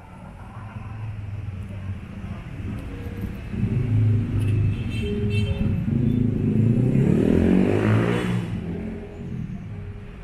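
A car engine rising in pitch and level to its loudest about eight seconds in, then dropping away, like a car accelerating past.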